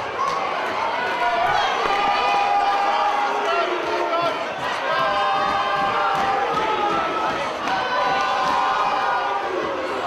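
Crowd of fight spectators shouting and cheering, many voices overlapping at a steady loud level.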